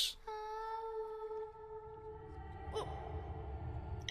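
A girl's voice singing one long held note in the episode's soundtrack, fading slowly, with a low rumble beneath it.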